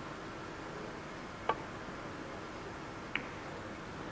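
Two sharp clicks of cue and carom billiard balls during a three-cushion shot, about a second and a half apart, over a steady hiss.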